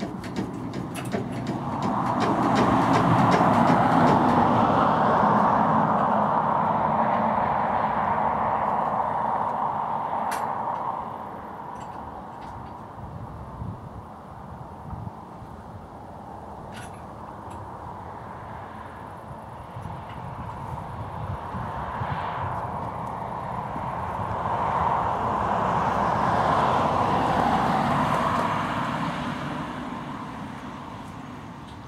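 Road traffic passing twice, each a rushing sound of tyres and engine that swells over a few seconds and fades, with a couple of faint sharp clicks between the passes.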